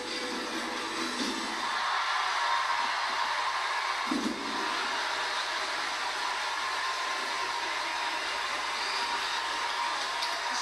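Electric blower fan running steadily as it inflates a giant orange bag, heard through a television speaker, with a brief low thud about four seconds in.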